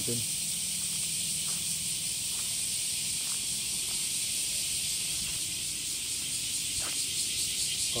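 A steady high-pitched hiss throughout, with a few faint taps of footsteps on stone paving.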